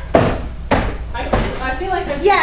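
Three sharp knocks or bangs, a little over half a second apart, with voices around them.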